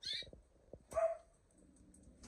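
Two short animal calls about a second apart, with a few light clicks between them.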